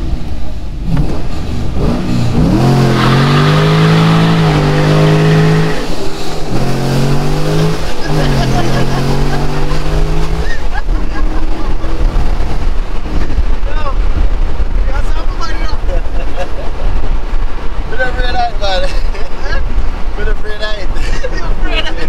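A Corvette's 6.2-litre V8 pulling hard under acceleration, heard from inside the cabin: a loud engine note from a few seconds in until about halfway through, briefly dipping twice, then falling back beneath laughter and talk.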